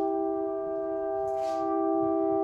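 Live saxophone and a brass horn holding long, steady notes together in a sustained chord. A brief hiss comes about one and a half seconds in.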